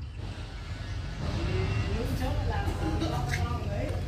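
A low, steady engine rumble, with faint distant talking coming in about a second in.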